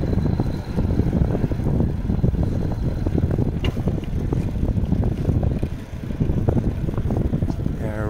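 Wind noise on the microphone of a camera carried on a moving bicycle: a steady low rumbling rush that dips briefly about six seconds in.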